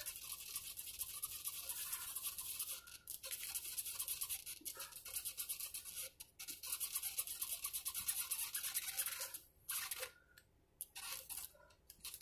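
Cloth rag rubbed rapidly back and forth over a mandolin's fretboard and frets, working mineral oil into the wood around the frets. The scrubbing goes in quick, even strokes and pauses briefly near the end.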